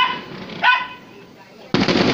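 A dog barks twice, short and sharp. Near the end a distant firework shell bursts with a sudden bang that trails off slowly.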